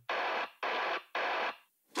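Three evenly spaced bursts of radio-like static, each about half a second long and cut off sharply, opening a metalcore track.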